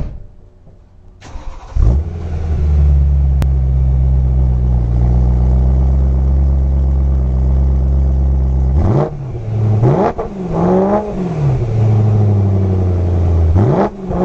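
BMW E90 M3's S65 V8 cranking and firing just before two seconds in, then settling into a steady idle through its modified OEM exhaust. From about nine seconds in it is revved in quick throttle blips, each rising and falling in pitch, with another starting near the end.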